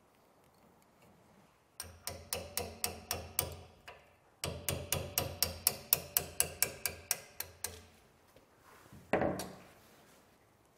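Quick light hammer taps on steel, about five a second, in two runs of several seconds each, then one last knock near the end: the flat-bar retaining clip being knocked up out of an axe head's eye.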